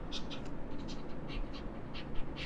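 A pen writing by hand: a quick run of short, squeaky strokes, several a second, as letters are formed.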